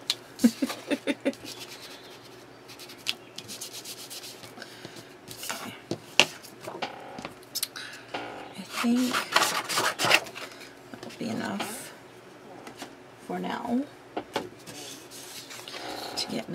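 Sheets of paper being handled over a paper towel and craft mat, rubbed, slid and rustled while inking the edges. A quick run of light taps comes in the first second.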